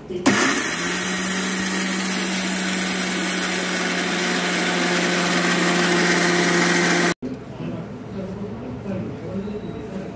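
Electric mixer grinder starting up and running at full speed, grinding millet grains to powder in its stainless-steel jar. It gives a loud, steady whirring noise with a constant hum. It switches off abruptly about seven seconds in.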